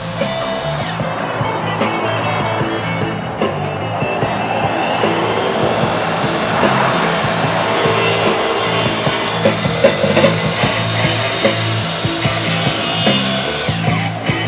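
Rock music led by a heavily distorted electric guitar, over a bass line that steps between held notes. It grows louder through the first half.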